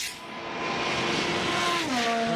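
Formula One race car passing at speed. Its high engine note holds steady, then drops in pitch near the end as the car goes by.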